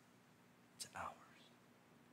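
Near silence in a room, broken about a second in by a man saying two words softly, close to a whisper.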